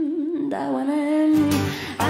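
Live female vocal holding a long, wavering sung note. A deep pulsing bass comes in a little past halfway, beating about twice a second.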